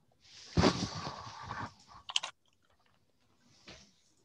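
A crackly rustling noise near the microphone for about a second and a half, followed by two quick computer mouse clicks and a fainter click near the end.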